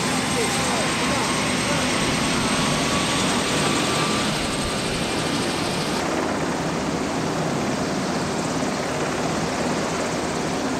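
VH-60N Marine One helicopter running on the ground, its rotor and twin turboshaft engines making a loud, steady noise with a thin high whine on top. About six seconds in the sound changes suddenly: the high whine drops away and the noise goes duller.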